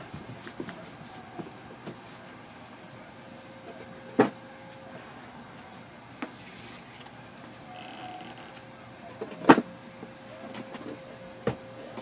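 Trading cards being handled and stacked on a tabletop: quiet rustling with a few short, sharp taps as the stacks are set down, the loudest about nine and a half seconds in.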